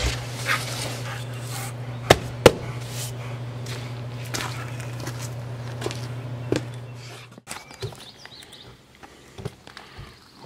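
A cardboard box set down in an SUV's cargo area with a knock, followed by scattered sharp knocks and steps, over a steady low hum that stops about seven seconds in.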